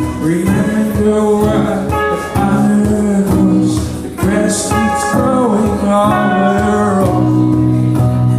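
Live song: a voice singing a slow melody to electric guitar, with a second guitar playing along.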